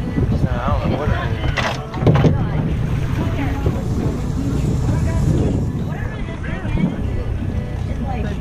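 Boat engine running at idle under wind buffeting the microphone, with indistinct crew voices and a couple of knocks on the hull about two seconds in.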